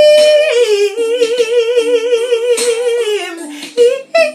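A woman singing long held notes without words: a high held note drops to a lower one, which she holds for about two seconds with a wide, even vibrato, then lets fall and slides up again near the end.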